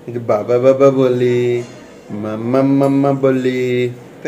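A man's voice chanting in a drawn-out sing-song: two long held phrases at a steady low pitch, each about a second and a half long.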